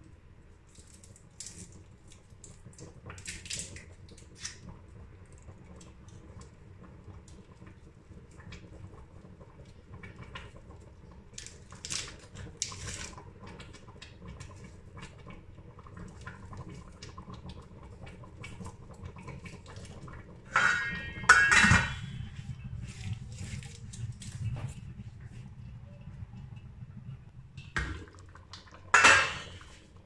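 Kitchen handling sounds at a stainless steel cooking pot: scattered small clicks and rustles, a loud clatter of knocks about 21 seconds in and another shortly before the end, over a low steady hum.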